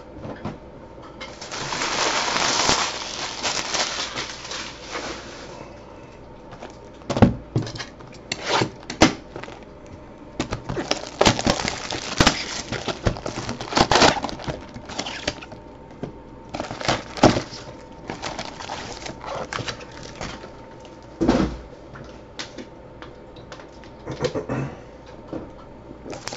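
A hobby box of trading-card packs being opened and unpacked by hand. A stretch of rustling early on is followed by a series of light taps and knocks as the cardboard box is handled and the packs are pulled out and set down.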